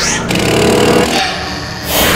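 A loud, rough, voice-like growl from a horror soundtrack, the sound of the demonic nun confronting the viewer.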